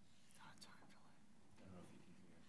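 Near silence with faint, indistinct speech: voices talking quietly away from the microphones.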